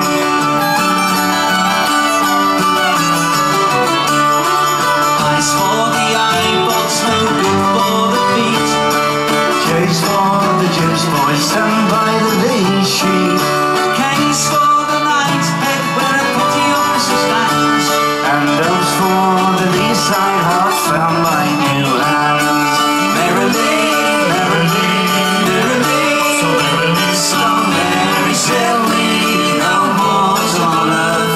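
Live folk-rock band playing an instrumental passage of a jaunty sea-shanty style song: strummed acoustic guitars and other plucked strings over drums.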